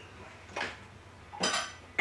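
Two brief light clinks with no speech: a soft one about half a second in, then a louder, brighter one that rings briefly.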